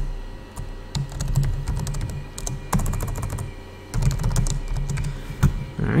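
Typing on a computer keyboard: a run of irregular key clicks as a short name is typed into a text field.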